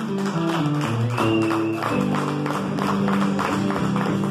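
Acoustic guitar strummed in a steady rhythm of full chords, with no singing over it.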